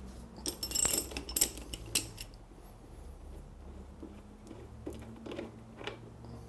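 Ratchet and socket on the bevel-drive level plug: a burst of metallic clicks and clinks in the first couple of seconds as the plug is cracked loose, then a few fainter ticks.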